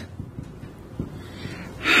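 A man drawing a breath close to the microphone near the end of a short pause in his speech, over a low background hiss, with one faint click about a second in.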